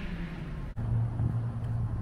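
Steady low engine hum, with a brief break about three quarters of a second in.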